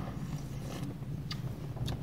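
Low steady hum of automatic car wash machinery, muffled inside the closed car, with a few faint clicks.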